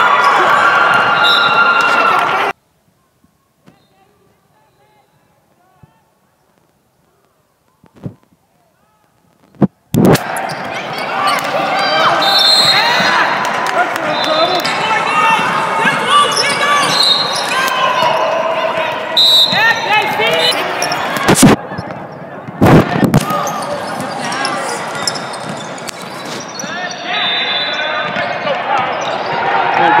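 Basketball game sound in a large gym: the ball bouncing on the hardwood, with spectators' and players' voices overlapping. The sound drops out almost completely for several seconds near the start, then comes back.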